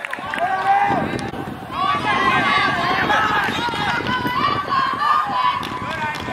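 Several voices yelling and shouting at once, overlapping and high-pitched. The shouting starts about half a second in, eases briefly, and then swells up again about two seconds in.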